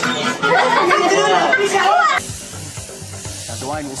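Voices and chatter of a busy room over music, cut off about two seconds in. After that comes a quieter steady hiss and low hum, like an electric sheep-shearing handpiece running, and a man's voice starts near the end.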